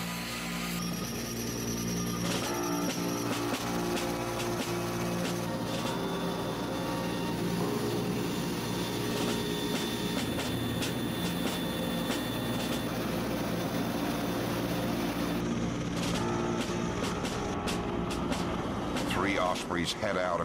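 Steady drone of a V-22 Osprey tiltrotor's engines and rotors in flight.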